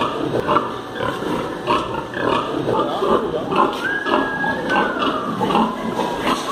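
Many pigs in a farrowing barn grunting and squealing over one another, a continuous din of short calls. Just past the middle, a thin high note is held for about a second and then falls.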